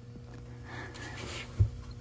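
Quiet handling noise from a hand working among heavy battery cables: a faint rustle, then one soft low thump, over a steady low hum.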